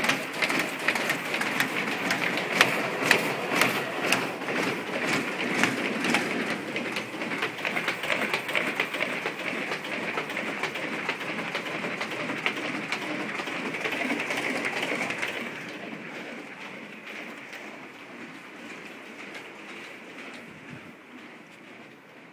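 Printing machine running with a steady, rapid mechanical clatter of clicks; the sound grows steadily fainter over the last third as the machine falls into the distance.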